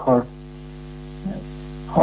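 Steady electrical mains hum with a stack of even overtones, running under a pause in the speech. A word ends just at the start, and talking resumes near the end.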